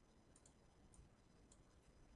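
Near silence, with four or five faint, sharp computer mouse clicks as items are clicked and dragged in the program.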